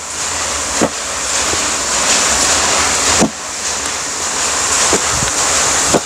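Loud steady rushing noise with a few faint clicks, dipping briefly about three seconds in.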